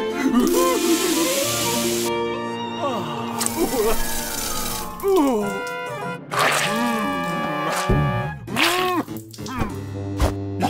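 Cartoon soundtrack: a spray of water from a garden hose hisses for about a second and a half near the start. Bouncy background music and wordless cartoon vocal sounds run throughout.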